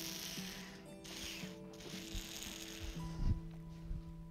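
Water being sipped from a plastic sports bottle: two stretches of hissing, airy slurping, then a couple of soft low thuds near the end. Quiet guitar background music plays under it.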